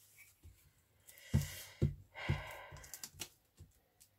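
Paper being pressed and smoothed down by hand onto a glued collage page: soft rustling with a few light taps, starting about a second in.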